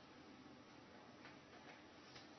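Near silence: faint steady hiss with two faint clicks a little over a second in.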